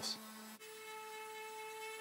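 Electric random-orbit sander running on an MDF cabinet panel, heard faintly as a steady whine that shifts to a higher pitch about half a second in.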